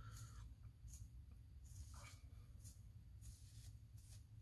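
Near silence: room tone with a steady low hum and a few faint, brief rustles, likely from a comb and fingers moving through the synthetic wig hair.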